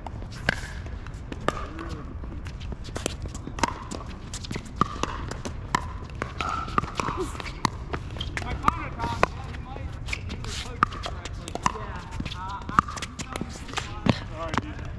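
Pickleball rally: sharp pops of paddles striking the plastic ball and the ball bouncing on the hard court, coming irregularly about once a second, over a steady low rumble.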